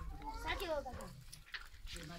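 People's voices, with a falling bleat from a flock of sheep about half a second in.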